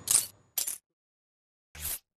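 Three short, sharp clicks with silence between them: one right at the start, one about half a second in, and one near the end.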